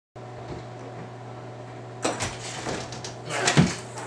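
A steady low electrical hum with hiss. From about two seconds in come a series of knocks, bumps and rustles, with a louder thump near the end, like something being handled or a door or cupboard being worked close to the microphone.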